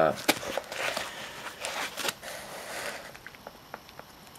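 Handling noise from a small clear plastic bag of mounting screws and the foam packing of a boxed water block: soft rustling with a few sharp, scattered clicks.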